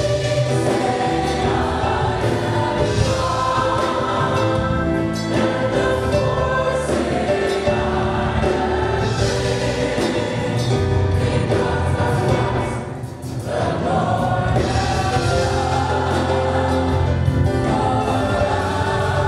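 Church praise team and choir singing a gospel song with a steady low accompaniment. The song runs on without a break, dropping briefly in loudness about 13 seconds in.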